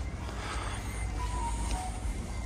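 Quiet background music over a steady low hum, with no clear mechanical event.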